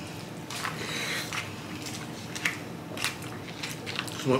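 People eating: chewing, and a plastic fork twirling spaghetti in a plastic takeout tray, with several soft, short clicks and scrapes.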